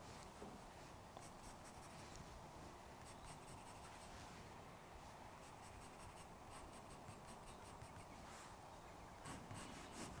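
Faint scratching of a pencil on paper, in little runs of quick, short shading strokes.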